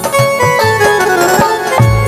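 Instrumental passage of a live Rajasthani devotional bhajan: a reedy melody instrument plays held notes stepping up and down over a steady drum beat.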